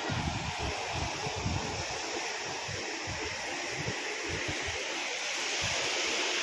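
Swollen floodwater rushing steadily, a constant hiss, with irregular low wind rumbles buffeting the microphone.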